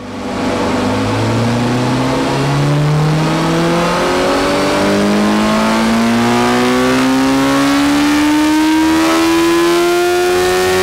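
BMW S1000XR Gen 2's inline-four engine on a motorcycle dyno during a power run, the revs climbing steadily from low in the rev range. The bike is stock, with its catalytic converter and standard BMW end can.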